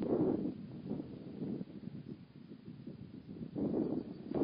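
Wind buffeting the microphone outdoors: an uneven low rumble that swells at the start and again near the end.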